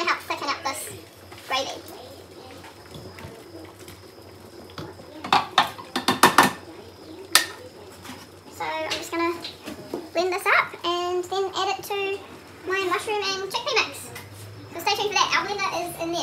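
A metal ladle clinking and knocking against a stockpot and a blender jug as boiled vegetables are scooped across, with a few sharp knocks about five to seven seconds in. A young child's voice talks through the second half.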